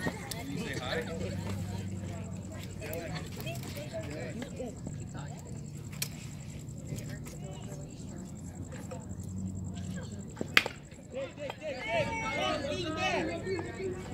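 A single sharp crack of a bat hitting a baseball about ten seconds in, over distant crowd chatter and a low steady hum, followed by voices calling out.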